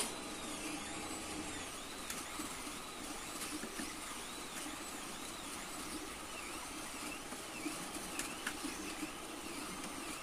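3D printer's stepper motors whining in a run of repeated rising-and-falling chirps, about two a second. Small clicks come in the second half, from a hand deburring tool scraping the aluminium fin.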